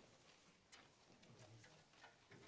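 Near silence: quiet room tone with a few faint clicks, one sharper about three-quarters of a second in.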